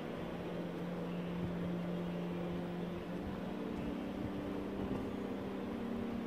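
Steady low mechanical hum, a constant drone that steps up slightly in pitch about halfway through.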